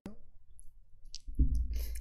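A single sharp click as a stock ticker is entered on the computer, then a faint short tick about a second later; a man's voice starts near the end.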